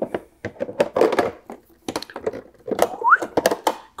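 Hard plastic clicks and knocks as a crevice attachment is stowed back in the storage compartment of a Milwaukee M18 2-gallon cordless wet/dry vacuum and its parts are handled, with a brief rising squeak of plastic rubbing about three seconds in.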